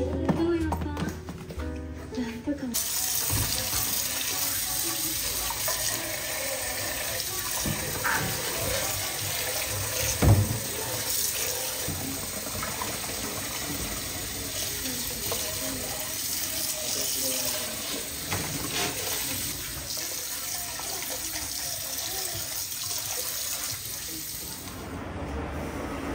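Kitchen tap running into a heavy pot in a soapy sink as it is scrubbed by hand, with the pot clunking against the sink, loudest once about ten seconds in. For the first couple of seconds, before the water starts, a drama's voices and music play from a tablet.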